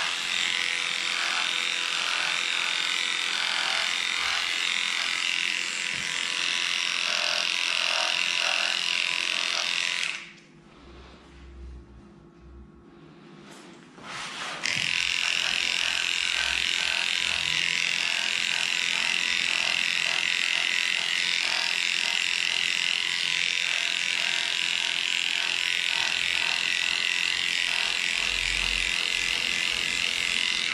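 Electric dog-grooming clippers running with a steady high buzz as they shave through a dog's matted coat. The clippers stop for about four seconds near the middle, then run again.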